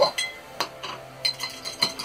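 A small paintbrush being rinsed in a jar of brush cleaner, giving a series of light clinks as it knocks against the jar.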